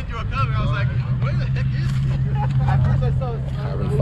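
A car engine idling steadily, an even low hum, with people talking over it.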